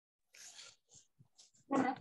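Near silence on a video-call line, with a faint, short noise about half a second in. Near the end a man's voice starts speaking.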